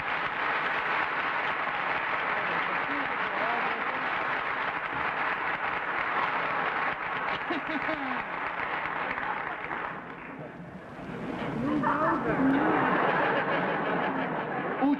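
Studio audience applauding steadily. The applause fades briefly about ten seconds in, then swells again with laughter and voices near the end.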